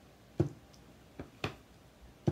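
A clear acrylic stamp block pressed down onto cardstock on a work mat: three short knocks, one about half a second in, then a fainter and a louder one close together near a second and a half.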